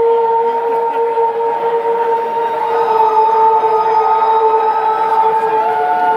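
A steady drone of held notes from a rock band's amplified stage sound, as the intro ahead of the song, with crowd noise underneath. A third note joins near the end.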